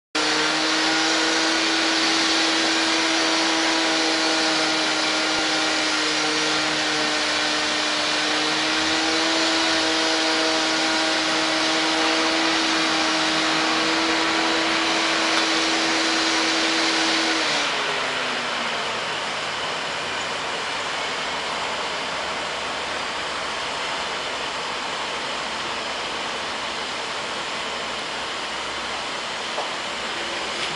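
A loud, steady, fan-like whine of electric railway equipment over a hiss. It winds down in pitch and stops about 17 seconds in, leaving a quieter steady rushing noise.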